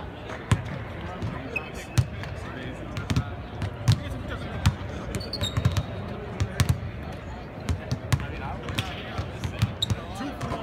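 Several basketballs bouncing on a hardwood court: irregular thuds from more than one ball, several a second, in a large, mostly empty arena.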